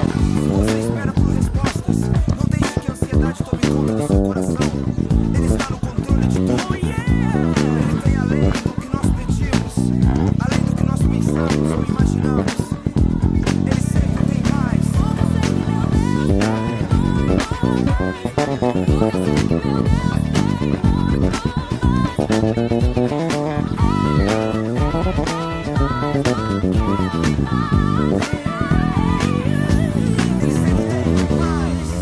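A deOliveira Dream KF five-string Jazz Bass, made with a guajuvira top, played in a busy, continuous line with many sharp, percussive note attacks.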